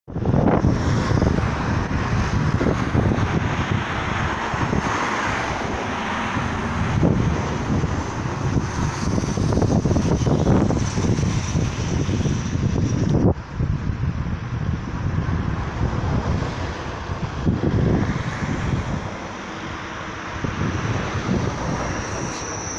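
Wind buffeting the microphone over the running noise of an Alstom Régiolis regional train pulling out of the station and drawing closer. A faint steady high whine runs through it.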